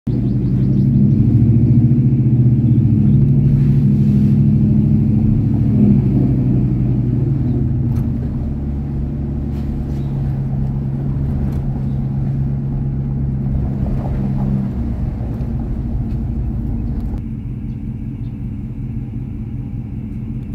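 2003 Dodge Ram's 5.7-litre Hemi V8 running as the pickup drives slowly, heard from inside the cab: a steady low engine rumble. About 15 seconds in, the engine tone eases off and the sound settles quieter toward idle.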